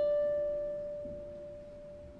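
A single pedal harp note, plucked just before, rings on clear and pure and slowly fades away.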